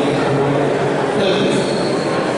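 A man speaking into a handheld microphone, his voice amplified through a public-address system, over a steady background rumble.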